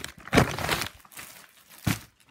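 Plastic mailing envelope crinkling as it is handled and pulled open, loudest about half a second in, with a short knock just before the end.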